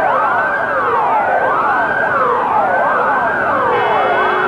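Several police car sirens wailing at once, overlapping, each sweeping up and down in pitch about once a second. A steady tone joins them near the end.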